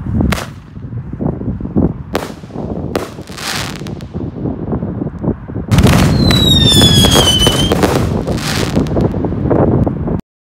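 Single-shot airbomb fireworks launching and bursting: a run of sharp bangs and launch hisses. About six seconds in it turns loud and dense as several go off together, with a screaming whistle that slowly falls in pitch over the bangs.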